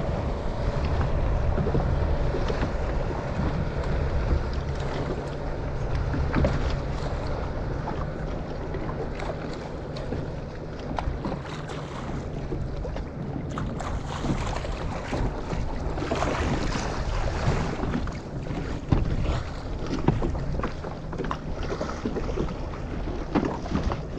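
Choppy sea water lapping and splashing against a small craft's hull just below the microphone, with steady wind buffeting the microphone. Sharper splashes come in the last few seconds as spray reaches the lens.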